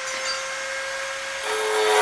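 Steel grille bars being handled and rubbed against each other on the ground, over a faint steady hum. About one and a half seconds in, a louder, steady noise with a whine in it comes in.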